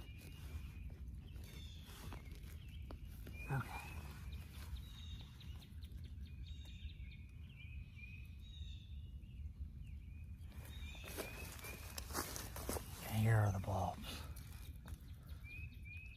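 Bare hands digging in forest soil and leaf litter, with scraping and crackly rustling that thickens about two-thirds of the way through as a wild leek bulb is worked loose. Across it a bird calls in short runs of high chirps, over a steady low rumble.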